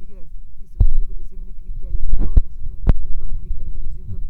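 A loud low hum with four dull thumps, the strongest near three seconds in, and faint voices underneath.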